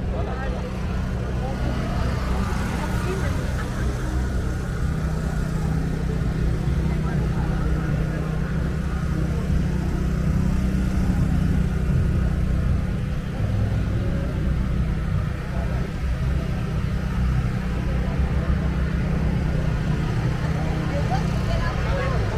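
Crowd chatter from many people talking at once, over a steady low rumble.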